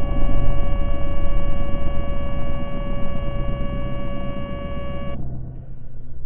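Outro logo sound effect: a low rumble under a steady hum of several held tones, slowly fading. The tones cut off suddenly about five seconds in while the rumble carries on.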